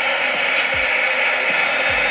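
Football stadium crowd, a steady loud din of many voices.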